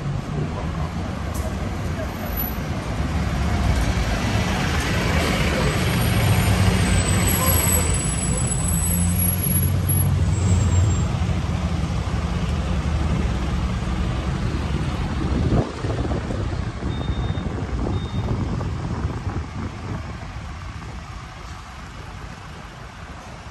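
Road traffic passing close by: a heavy vehicle's engine rumble builds over a few seconds, holds, then slowly fades away.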